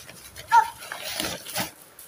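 A single short, high yelp about half a second in, over the rustle of plastic shopping bags being handled.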